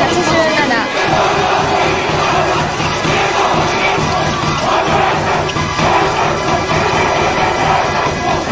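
A large school cheering squad and crowd chanting and shouting in unison, loud and continuous, over a steady repeating low beat from drums.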